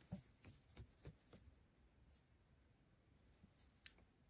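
Near silence, with a few faint soft ticks and rustles of a crochet hook working yarn, mostly in the first second and a half.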